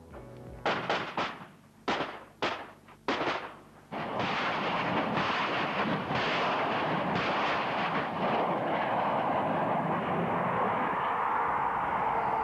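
G6 self-propelled howitzer firing: a sudden loud onset about four seconds in, followed by a steady rushing noise. A few short sharp cracks come before it.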